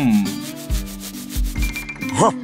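Cartoon background music with a steady bass beat and held tones, under a rhythmic scratchy rubbing texture. A short falling glide sounds right at the start.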